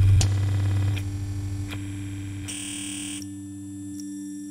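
Minimal micro tech house track thinning into a breakdown. The deep bass and clicking beat drop out after about a second, leaving a steady low synth drone. About two and a half seconds in, a buzzy electronic tone sounds for under a second.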